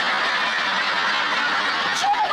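Studio audience laughing loudly, a dense, steady wash of many voices.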